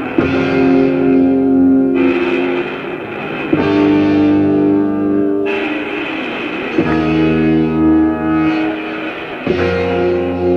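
Live rock band music: a slow instrumental opening of held, effects-laden chords, with a new chord struck about every three seconds.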